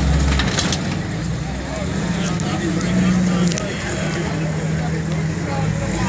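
Lifted Jeep's engine running at low revs, its tone swelling and easing, as its front tires bear down on a small car's front end. A few sharp clicks come near the start and again around the middle.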